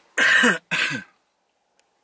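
A man coughing twice in quick succession, two loud short coughs in the first second, inside a car.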